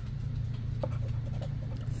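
A metal scratcher coin scraping the coating off a paper scratch-off lottery ticket: a faint, quick rasping with a small click about a second in, over a steady low hum.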